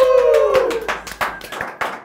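A person clapping hands in a quick, even run of claps, over the tail end of a long drawn-out shout that fades out about half a second in.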